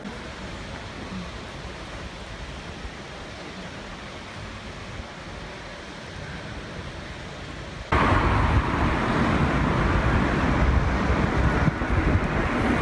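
Steady outdoor city background noise, a low even hum of traffic and air with no distinct events. About eight seconds in it cuts abruptly to a much louder steady noise.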